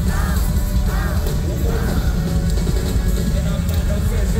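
Live hip-hop music played loud over a concert sound system, with heavy bass and a short rising-and-falling melodic figure repeating a little more than once a second.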